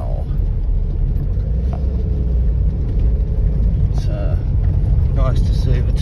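Steady low rumble of a car's engine and tyres on a rough track, heard from inside the moving car's cabin.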